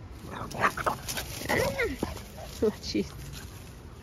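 Two Boston terriers play-wrestling, giving a string of short growls and yips.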